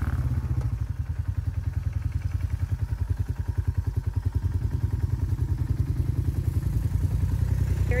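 ATV engine idling with a regular low pulsing chug.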